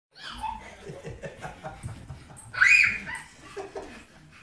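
A toddler giggling during rough play with a corgi, with the dog's play noises mixed in and one loud, high-pitched squeal about two and a half seconds in.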